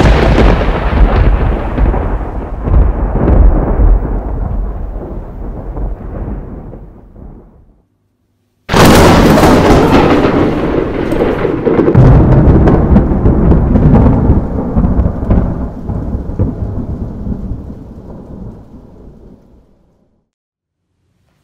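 Two loud, deep crashes with long fading tails. The first dies away over about eight seconds; after a short silence the second starts suddenly and fades out near the end.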